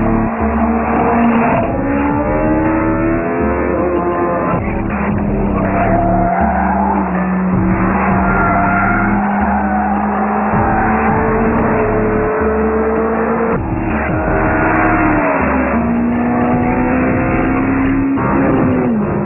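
Honda Civic Type R FD2's 2.0-litre K20A four-cylinder engine running hard on a race track, its pitch climbing and falling again and again with the throttle and the gear changes.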